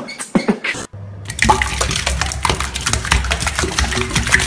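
A rhythmic, beatbox-like pattern of clicks and puffs stops just under a second in. After a short gap, a tap runs water onto hands being washed in a sink, a steady splashing hiss with small clicks through it.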